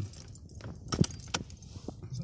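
Car key turned in an Opel Vectra C's ignition lock to switch the ignition on: a few sharp clicks with a jingle of keys, the loudest click about a second in.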